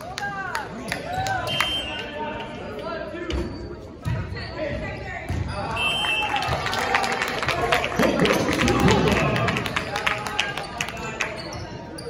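Volleyball rally on a hardwood gym court: the ball is struck and hits the floor, with sneakers squeaking. Players and spectators shout and cheer, loudest in the second half.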